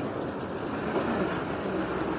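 Leyland ten-wheel container truck passing close by, its diesel engine and tyres on the asphalt making a steady rumble.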